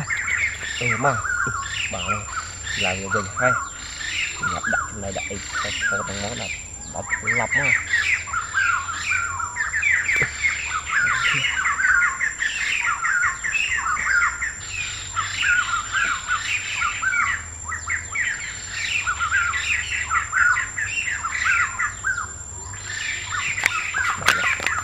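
Many birds squawking and chirping continuously, short calls overlapping thickly. The calls thin out briefly about seven seconds in and again near the end.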